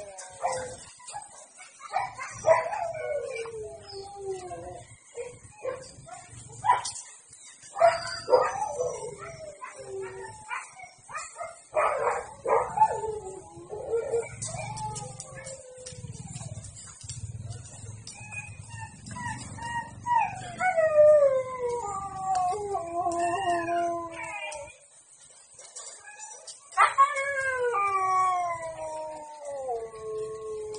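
Husky howling, yelping and whining again and again while being mated. Each call starts sharply and slides down in pitch, and the longest drawn-out howls come past the middle and near the end.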